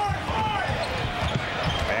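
Basketball being dribbled on a hardwood arena floor, a run of low thumps, over a steady murmur of a large arena crowd.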